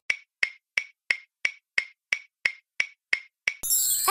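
A quiz countdown sound effect: evenly spaced clock-like ticks, about three a second, giving thinking time after a question. Near the end the ticks stop and a bright shimmering chime begins as the answer is revealed.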